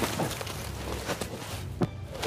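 Footsteps crunching through dry fallen leaves as a person climbs a steep slope, with a sharper crunch or snap near the end.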